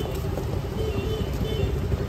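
Busy street ambience: a steady rumble of road traffic, with a motorcycle coming along the road.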